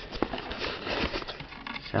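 Handling noise: soft rustling with scattered light clicks and taps, with no steady tone.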